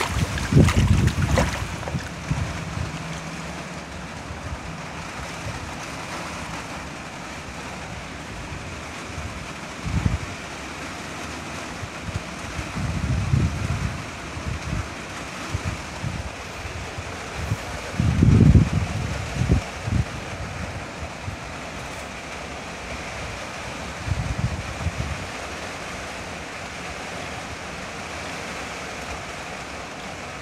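A steady hiss of falling water, with a few sharp clicks near the start and several short low bumps of wind or handling on the microphone.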